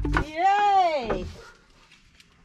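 Background music with a steady beat cuts off, then one drawn-out vocal call of about a second, its pitch rising and then falling, fades away.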